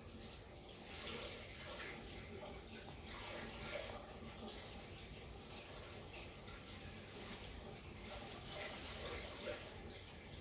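Water running faintly as paintbrushes are rinsed out, to clear the paint before new colours.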